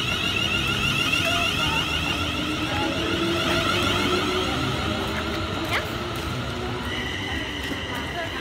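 Siemens Desiro Class 350/3 electric multiple unit pulling away from the platform: its traction equipment gives a high, wavering electronic whine made of several tones, over the low rumble of the carriages rolling past. The whine eases off as the train draws away.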